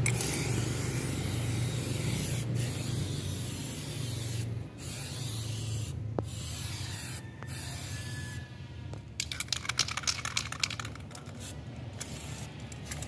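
Aerosol spray can hissing as it is sprayed over a framed canvas painting, in long sprays with brief breaks. Near the end, a quick run of short bursts.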